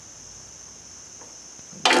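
Steady high-pitched chirring of insects, typical of crickets, with a single sharp click near the end.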